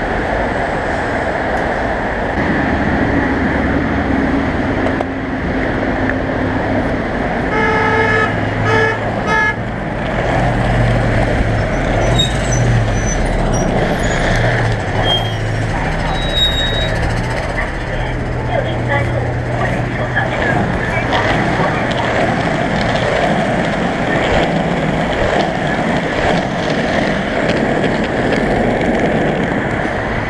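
Busy city street traffic with a vehicle horn tooting in three or four short blasts about eight seconds in, over the steady noise of passing vehicles and a low engine hum.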